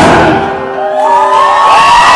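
Live rock band ending a song: the drums and full band drop away, leaving held guitar tones ringing out, and about a second in the crowd starts cheering and whooping.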